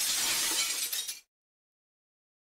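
An end-screen sound effect: a burst of hissing noise that fades over about a second and then cuts off abruptly.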